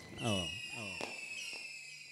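A man's voice through a stage PA, sliding down in pitch in a few short phrases and fading away, over a faint steady high-pitched tone.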